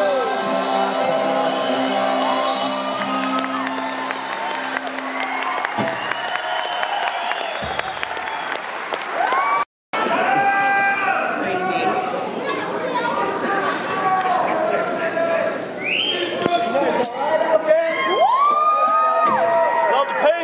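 Concert audience in a large hall cheering, shouting and whooping, with whistles, after a song. The last held chord of the song rings under it and fades over the first few seconds. The sound cuts out completely for a moment about ten seconds in.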